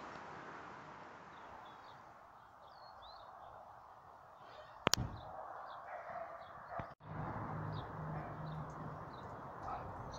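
Outdoor ambience: faint bird chirps over a steady background rush, with one sharp click about five seconds in and a low hum coming in after about seven seconds.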